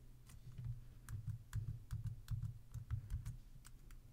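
Typing on a computer keyboard: a faint, irregular run of key clicks, a dozen or so keystrokes, with soft thuds beneath them, stopping near the end.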